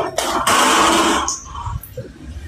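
A loud, hiss-like rush of noise over a voice-chat line, lasting about a second, then dropping to a faint background.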